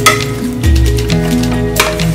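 Chicken pieces frying in masala in a metal pot, sizzling as they are stirred, with a sharp clink at the start and another near the end. Background music with a melody and a bass line that comes in about half a second in plays over it.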